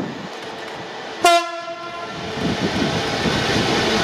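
GBRf Class 66 diesel locomotive 66714 sounding one short horn blast about a second in. After it the rumble of the locomotive and its train of hopper wagons grows steadily louder as they approach.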